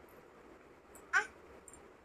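A baby's short squeal, once, a little over a second in.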